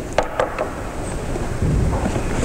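Small objects handled on a wooden tabletop close to the table microphones: two sharp clicks in quick succession early on, then a soft low bump near the end, over the steady hiss and rumble of an old interview recording.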